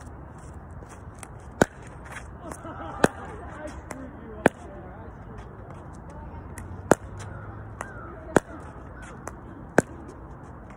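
Solo pickleball rally against a rebound practice wall: a Franklin paddle striking the hollow plastic ball and the ball rebounding off the wall and court, six loud sharp pops roughly one and a half seconds apart, with softer knocks in between.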